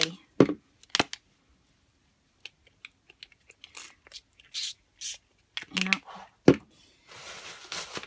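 Small pump-spray bottles of Distress Spray Stain misting in several short separate sprays. A sharp knock comes about six and a half seconds in, and a steadier hiss fills the last second.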